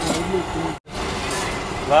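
Busy roadside street ambience: a steady hum of traffic under faint voices, broken by a brief dropout to silence just under a second in.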